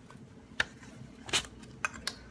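Tupperware mandolin with its waffle blade in use, a potato in the plastic food guard pushed down and turned between strokes: three sharp plastic clicks, a little over half a second apart.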